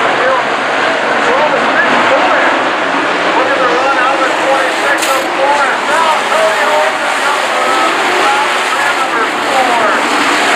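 A pack of dirt-track sport modified race cars running hard, many engines rising and falling in pitch at once as they race through the turns. The sound is loud and steady.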